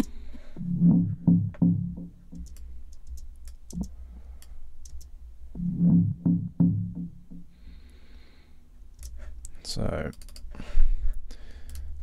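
A short electronic fill of low, bass-heavy synth hits played back twice from the DAW, dulled with its highs and high mids EQ'd away. Computer mouse clicks fall between the playbacks.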